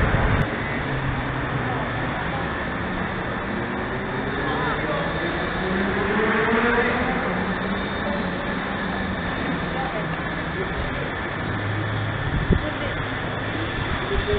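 City background noise, with a motor vehicle passing about halfway through; its engine pitch rises and it grows loudest as it goes by.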